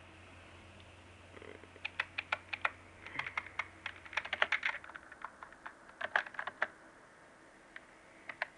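Computer keyboard keys tapped in quick runs to move through BIOS setup menus. The taps start about two seconds in and stop near seven seconds. A low steady hum lies underneath and fades out around four and a half seconds.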